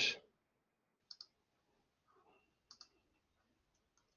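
Two computer mouse clicks, each a quick double tick, about a second in and just before three seconds in, on an otherwise quiet track.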